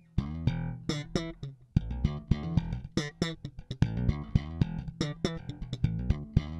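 Electric bass guitar, a Jazz-style four-string, playing a funk groove with sharp, percussive note attacks, starting suddenly right at the beginning.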